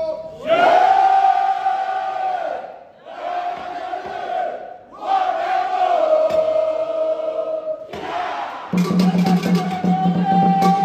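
A group of men shouting long war cries together, three times, each held about two seconds and falling in pitch. Near the end, music with a steady beat starts.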